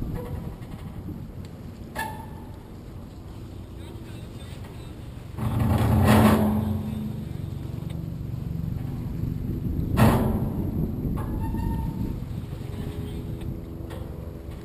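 Wind buffeting an outdoor camera microphone on the water, a steady low rumble. About five seconds in, a loud blast with a steady low tone swells for a second or so, and about ten seconds in there is a single sharp knock.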